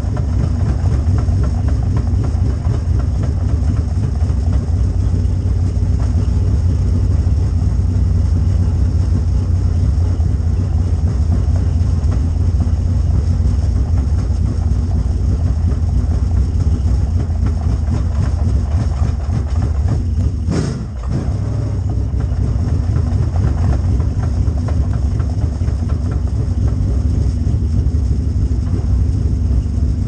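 Dirt late model race car's V8 engine running at low speed, a steady deep rumble heard from inside the cockpit. About two-thirds of the way through there is a single click and the sound briefly drops.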